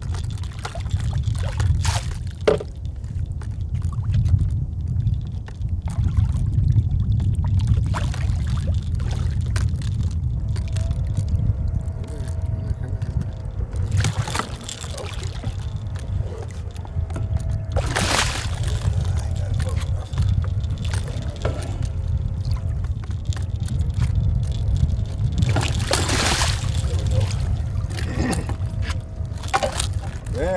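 Water splashing and sloshing as a big hooked catfish thrashes at the surface beside the boat and is netted, with a few stronger surges of splashing, the biggest near the middle and about two thirds through. A steady low rumble runs underneath.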